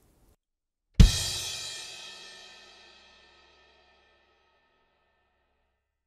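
A Sabian Anthology crash cymbal struck once on its edge with the shoulder of the drumstick, together with a single kick drum beat, about a second in; the cymbal rings out and fades away over a couple of seconds. This edge hit gives the fuller crash sound, as against the sharper attack of a hit on the top.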